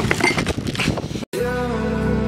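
Cardboard packaging pulled and torn open by hand, a crackly scraping for about a second. After a brief dead gap, music with long held chords starts.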